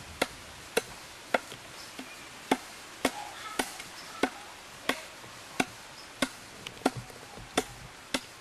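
A hand carving blade chopping into a block of light, soft wood being shaped into a fishing float: sharp, evenly paced strokes, roughly one every half second or so, about a dozen in all.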